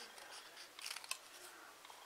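Small craft scissors cutting through a narrow strip of cardstock: a few faint snips.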